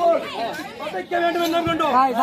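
Several voices talking or vocalising at once, overlapping one another.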